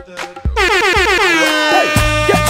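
DJ mix with a couple of drum hits, then about half a second in a loud horn sound effect that sweeps down in pitch and settles into a held tone over the music.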